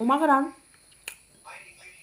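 A woman's brief rising voiced sound, then quiet eating noises while she chews, with a sharp click about a second in.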